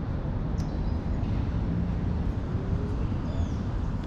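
Outdoor background: a steady low rumble with a couple of faint, brief high chirps, while the coin brushing has stopped.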